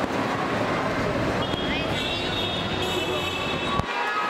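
Busy airport terminal ambience: indistinct voices and a steady wash of crowd and hall noise, cut off abruptly near the end.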